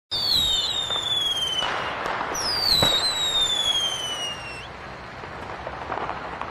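Fireworks: two long whistles falling in pitch, one after the other, with a crackling burst, a sharp bang about three seconds in, and crackle that fades away near the end.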